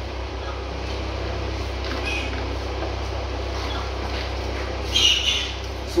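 Farm animals in the background over a steady low hum, with a short high-pitched animal call about five seconds in.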